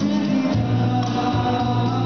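A live cover of a Sinhala pop song: a male vocalist singing into a handheld microphone over electronic keyboard accompaniment, with sustained bass notes.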